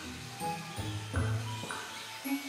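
Background music: held notes in changing chords over a bass line.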